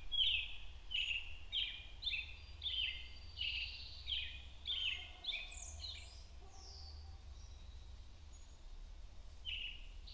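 A songbird singing a run of short downward-slurred notes, about two a second, breaking off a little past the middle and starting again near the end, over a steady low rumble.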